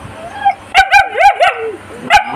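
A dog barking: a quick run of about four high, sharp barks, starting just under a second in.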